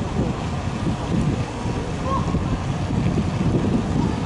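Wind buffeting the camera microphone: a gusting low rumble that rises and falls throughout. A brief faint chirp comes about two seconds in.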